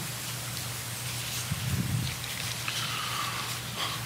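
Steady hiss with a low hum underneath: the open courtroom microphone's background noise during a pause in testimony.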